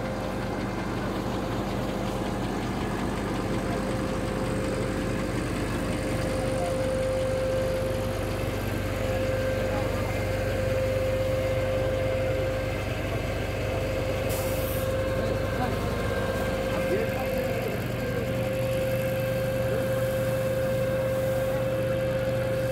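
An engine running steadily at idle, a constant hum with a clear steady tone over it, with faint voices in the background.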